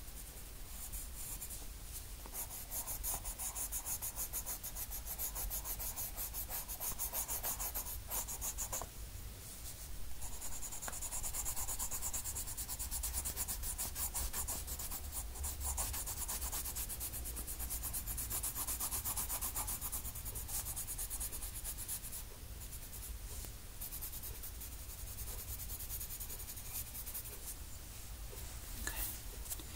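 Dark umber colour pencil shading on paper, a continuous run of rapid back-and-forth scratchy strokes as the hair is coloured in, pausing briefly twice.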